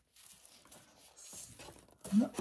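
Near silence, with a faint rustle of sheets of cardstock being handled and slid apart, a little louder just past the middle.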